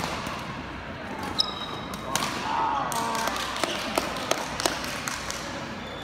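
Badminton racket strikes on shuttlecocks: sharp clicks at irregular intervals from a rally and neighbouring courts, with a brief high shoe squeak on the court floor about a second and a half in.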